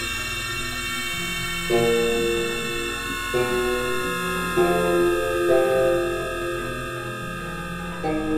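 Experimental synthesizer music: a held cluster of high steady drone tones, sinking slightly in pitch, over lower sustained chords that change every second or two.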